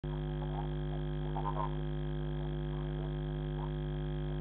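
Steady electrical mains hum with a stack of overtones on a security camera's narrow-band audio, with a few faint short sounds about a second and a half in.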